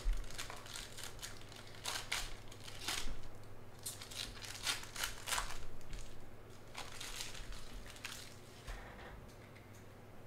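A foil trading-card pack wrapper being torn open and crinkled by hand: irregular rips and crackles, busiest in the middle and thinning out toward the end.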